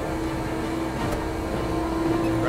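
2006 Zamboni ice resurfacer running as it is driven across the ice: a steady engine rumble with a constant tone over it.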